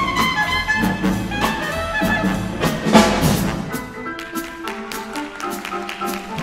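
Jazz big band playing a swing tune, with a clarinet lead line over brass and drums. The bass drops out for the last couple of seconds, leaving lighter accompaniment.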